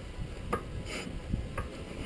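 A few light metallic clicks and knocks from handling the rusted rear brake disc and caliper, over a low background rumble.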